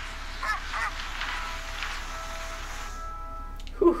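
TV drama soundtrack of a snowstorm: a steady rush of blizzard wind with a couple of short strained grunts early on. Soft held music notes come in, and the wind cuts off about three seconds in.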